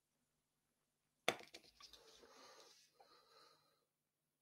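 A sharp click about a second in, then soft rustling noise for a couple of seconds with another small click, close to a headset microphone as its wearer shifts in his seat.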